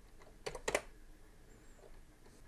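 Computer keyboard keystrokes: two sharp key presses about a quarter second apart, with fainter taps before and after, answering a yes/no prompt and pressing Enter.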